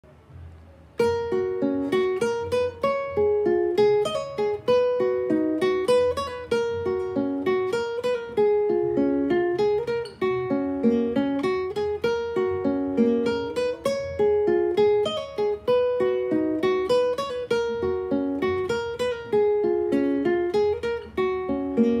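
Solo acoustic guitar picking a single-note intro melody, starting about a second in with a quick, steady run of plucked notes.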